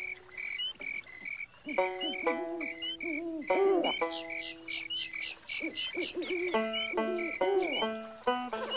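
Recorded night bayou ambience: frogs croaking in a loose chorus over high insect chirps repeating in an even rhythm, about two a second.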